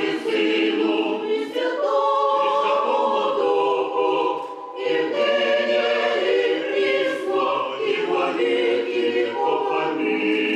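Mixed church choir of women's and men's voices singing Russian sacred music a cappella, in sustained chords that move from note to note. There is a short break between phrases about four and a half seconds in.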